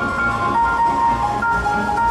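Live bebop jazz quartet of saxophone, piano, upright bass and drums playing, taped from the audience. A melody of held notes steps between pitches over walking bass and drums.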